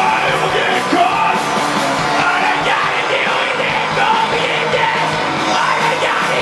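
A rock band playing loudly live, with drums, electric bass and electric guitar. The bassist sings into the microphone over a steady kick-drum beat.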